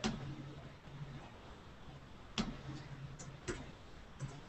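Faint room sound from a video-call microphone, with four sharp clicks or taps: one at the start, one about halfway through, and two close together near the end. A faint low hum comes and goes under them.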